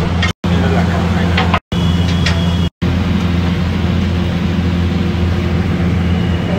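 Loud, steady low mechanical hum of a restaurant kitchen, like an exhaust fan or gas burner at the griddle, with voices talking underneath. It cuts out briefly three times, near the start, after about a second and a half, and about three seconds in.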